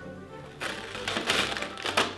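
A finger punches through the paper-covered door of an advent calendar box and tears it open. It makes a crackling rip that starts about half a second in, over background music.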